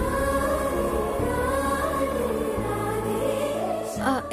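Background music: sustained, slowly gliding vocal lines over low held notes that change a few times.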